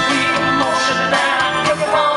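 Live band music: a song with a steady beat in the low notes, guitar among the instruments.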